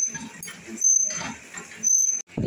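Water from a tap running into a bucket, coming in louder surges about once a second.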